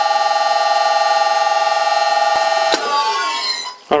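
VFD-driven electric motor of a vintage lathe running at 60 Hz, giving a steady high whine with several fixed pitches while the spindle turns at about 290 rpm. About three seconds in there is a click, and the whine slides in pitch and fades away.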